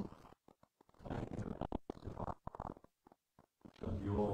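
Faint, indistinct murmured prayer, broken by short gaps of near silence.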